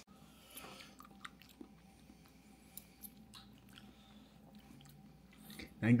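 Faint chewing of chicken wings: soft, irregular small clicks and crunches of food being eaten.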